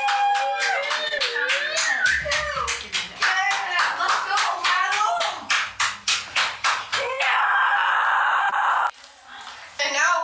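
Hand clapping, several claps a second, mixed with children's excited cheering and whooping. Near the end a loud steady noise holds for nearly two seconds and cuts off abruptly.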